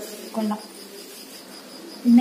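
Insect chirping, a high, steady pulsing trill that repeats several times a second.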